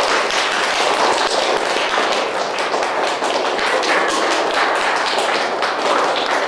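Small audience applauding: steady clapping with individual claps audible.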